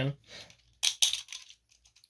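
A quick cluster of small, sharp clicks and rattles, about a second in, from small hard objects being handled; the tail of a spoken word is heard at the very start.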